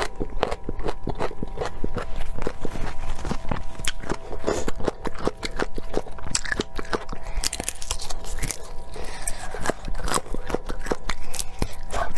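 Close-miked crunchy chewing and biting of raw vegetable and garlic, a dense run of sharp crunches with wet mouth sounds.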